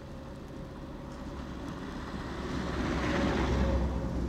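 A car driving along a snow-covered street toward and past the listener, its engine rumble and tyre hiss growing louder to a peak near the end.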